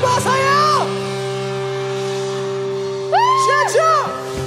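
Live rock band holding a sustained chord, with two long arching vocal calls over it, one at the start and one near the end.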